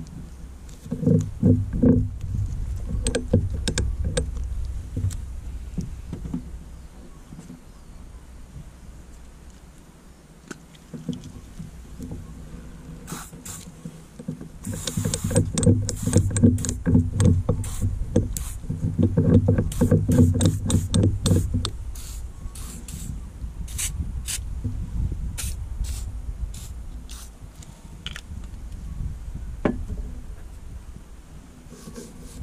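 A short hiss of WD-40 sprayed from an aerosol can onto the base of a Harken sailboat winch, about fifteen seconds in, amid clicks and knocks of the metal winch parts being handled. A low rumble runs underneath.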